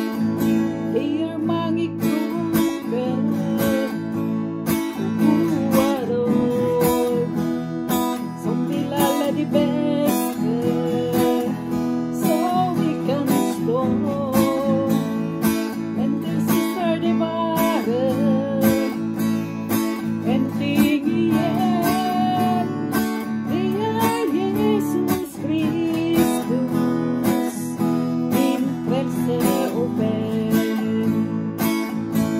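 A woman singing a Norwegian gospel song to her own strummed acoustic guitar, in a steady strumming rhythm under a slow, gliding vocal melody.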